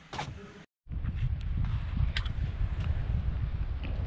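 Wind rumbling low and steady on a handheld camera's microphone outdoors, with a few faint ticks, after the sound drops out completely for a moment about a second in.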